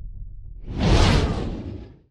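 Whoosh sound effect for an outro logo animation: a rushing sweep swells in about a third of the way through, peaks, then fades out. Under the first part, a low rumble dies away.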